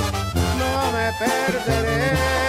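Banda sinaloense music in an instrumental passage with no singing: horns hold a melody over a bass line that steps from note to note.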